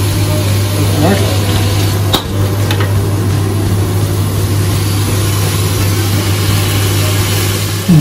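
Shredded vegetables sizzling in a hot wok while a slotted metal spatula stirs them, with a sharp clank of the spatula against the wok about two seconds in. A steady low hum runs underneath.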